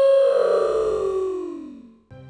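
A single synthesizer-like tone sliding steadily down in pitch and fading away over about two seconds: a falling-pitch sound effect.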